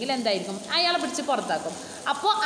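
A woman speaking in a continuous lecture voice; nothing else stands out.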